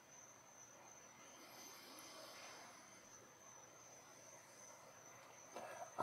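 Near silence: quiet room tone with a faint, steady, high-pitched whine throughout.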